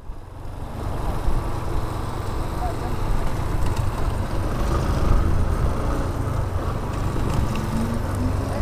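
Motorcycle riding sound on a helmet camera: a Yamaha Fazer 250's single-cylinder engine under a steady rumble of wind and road noise. The sound builds over the first second as the bike gets under way, then holds steady.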